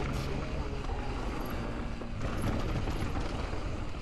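Low wind rumble buffeting a helmet-mounted action camera's microphone as a mountain bike descends a trail, with a few faint knocks from the bike.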